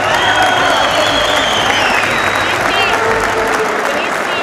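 Arena crowd clapping and calling out, with a long high whistle over the noise and short whistled chirps near the end.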